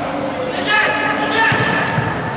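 Futsal players shouting to each other over a steady hum in a sports hall, with a sharp thud of the ball being kicked near the end.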